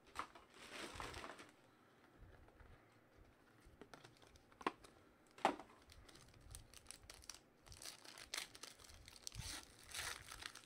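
Quiet handling of a cardboard card box, then two sharp clicks near the middle. Toward the end comes the crinkle and tear of a foil trading-card pack being ripped open.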